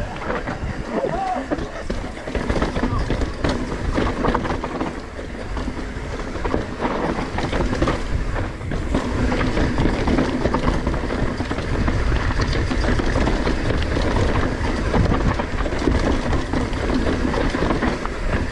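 Mountain bike descending a rough, steep dirt trail: the frame and drivetrain rattle and the tyres crunch over dirt, roots and rocks. Dense clicks and knocks ride on a steady low rumble.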